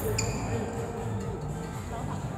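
Badminton hall ambience: people talking and background music, with a sharp knock about a fifth of a second in.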